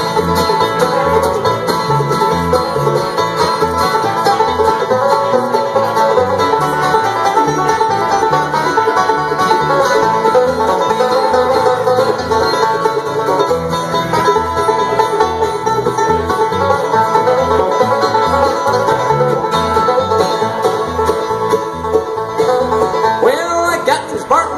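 Live bluegrass band playing an instrumental break between sung verses: banjo, acoustic guitar, mandolin and upright bass, with a steady bass beat under rapid picking.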